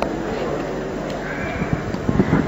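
Steady hiss and low hum from the speaker's microphone, with a faint short sound near the end.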